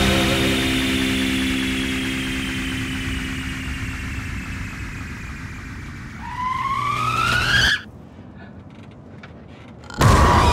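A car engine sound: a steady engine tone fading away, then the engine revving up in a rising whine that cuts off suddenly about three quarters of the way through, leaving only a faint low background.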